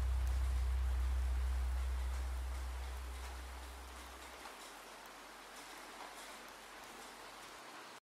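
Rain sound effect: a steady hiss of falling rain with scattered drops. Under it, the last low bass note of the slowed-down song fades out and is gone about halfway through, leaving the rain on its own.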